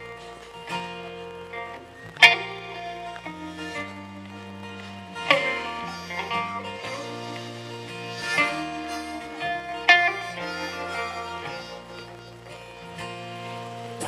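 Live band playing an instrumental break between sung lines: electric guitar and electric bass, with a harmonica playing over them and a few sharp accents.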